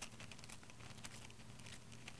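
Faint crinkling of thin tissue paper being handled in the fingers, small soft crackles over a low steady room hum.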